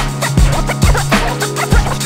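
Hip-hop instrumental beat with turntable scratching: short back-and-forth sweeps of a scratched record over a steady kick drum and a held bass note.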